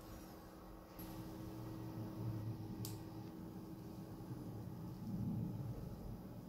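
Faint room noise with a low rumble and hum, and one short sharp click about three seconds in.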